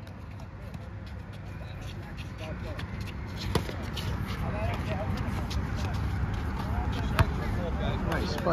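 Basketball bouncing on an outdoor asphalt court, two sharp bounces about three and a half and seven seconds in, the second the louder, over a steady low rumble and faint, distant players' voices.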